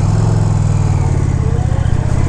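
Indian Challenger's PowerPlus V-twin engine running steadily under way, with the bike just put into sport mode; an even, low engine note.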